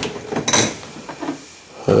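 Handling noise from an old Little Giant pipe wrench being turned in the hand close to the microphone: a couple of light knocks and a short scrape in the first half second or so, then quieter.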